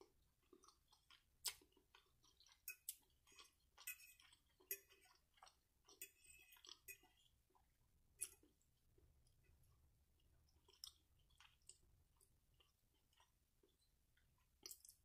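Faint close-up chewing of soft food (salmon and glazed carrots): a run of wet mouth clicks and smacks, thickest in the first half, with scattered single clicks later.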